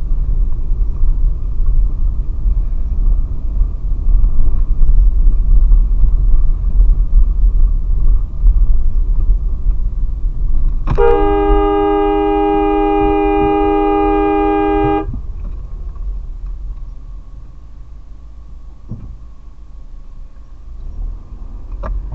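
A car horn held in one long blast of about four seconds, about halfway through, over the steady low rumble of a car driving; the rumble eases after the horn stops.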